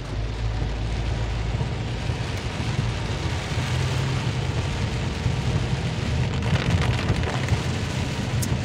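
Heavy rain falling on a moving car's roof and windshield, heard from inside the cabin, over the steady low running of the car and its tyres on the wet road.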